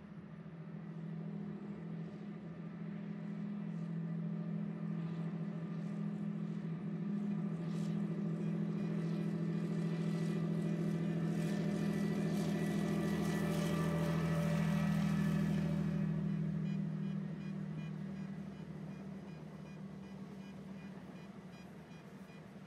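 Freight train of tank cars passing: a steady low drone with wheel rumble and clatter that builds to a peak about three-quarters of the way through, then fades.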